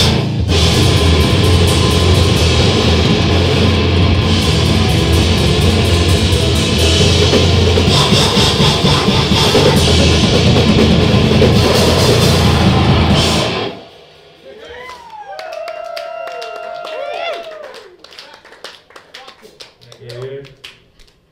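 Grindcore band playing live, loud and fast, with drums and distorted guitar. The music stops abruptly near the end, followed by a few seconds of much quieter sliding, wavering pitched sounds.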